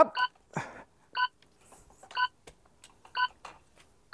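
A stopwatch-style electronic beep sounding once a second, each a short high bleep of several tones together, four in all. Faint clicks and knocks from tripod legs being unlocked and pulled out come between the beeps.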